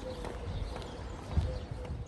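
Footsteps thudding on the hollow wooden boards of a footbridge, a few steps, the heaviest about a second and a half in, with a faint steady hum behind them.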